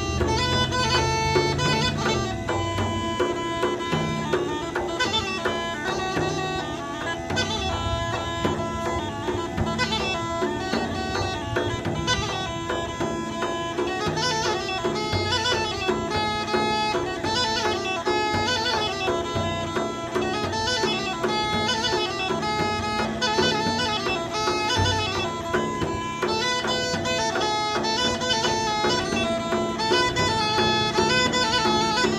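Bulgarian gaida (bagpipe) playing a quick-moving folk melody over a steady drone.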